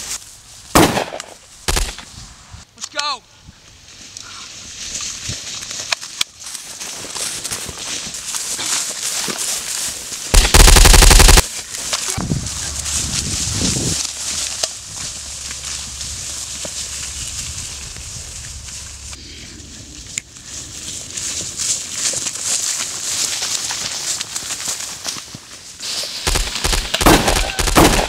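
Gunfire: a shotgun-like blast about a second in, more single shots soon after and near six seconds, then a very loud burst of rapid automatic fire around eleven seconds. A cluster of quick shots follows near the end. Shouts and a steady rushing noise fill the gaps.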